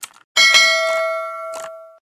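Subscribe-button animation sound effects: a short mouse click, then, about a third of a second in, a bright bell ding that rings on and fades away by the end, with a few faint clicks under it.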